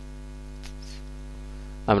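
Steady electrical mains hum, a low buzz with an even stack of overtones. A spoken word begins right at the end.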